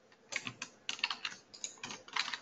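Computer keyboard typing: an irregular run of quick keystrokes starting about a third of a second in.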